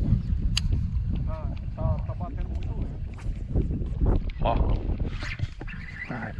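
Wind buffeting an outdoor microphone, a heavy low rumble throughout, with a few short voice sounds from a man and a sharp click about half a second in.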